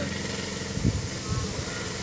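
Low rumble of road traffic going by, with a short thump a little under a second in.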